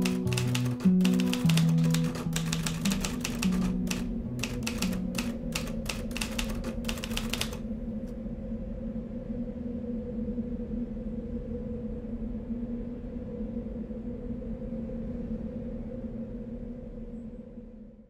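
Typewriter keys clacking in a quick, uneven run, over background music of plucked low notes. The clacking stops about seven and a half seconds in, leaving a held low chord that fades away near the end.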